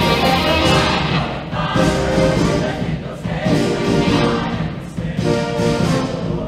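High school show choir of mixed voices singing in chorus with a live band accompanying, held chords sung in short phrases with brief breaks between them.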